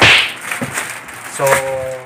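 A sharp swish of stiff plastic from a vacuum-compressed storage bag full of clothes being handled, fading within half a second, followed by a few lighter rustles. A man's voice speaks near the end.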